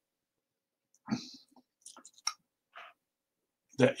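A breath and small mouth clicks close to a microphone: a short intake about a second in, then a few faint lip or tongue clicks, before speech resumes near the end.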